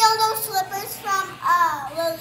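A young girl singing a few short phrases in a high voice, the pitch sliding up and down.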